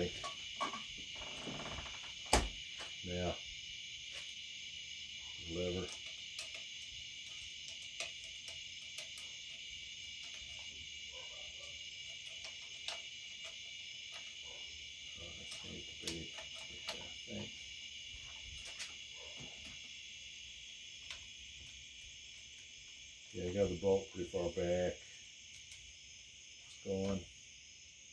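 Scattered light metallic clicks and knocks from the parts of a Marlin 1894C lever-action rifle being handled and fitted back together, the sharpest knock about two seconds in. A steady high insect chirring runs under it throughout.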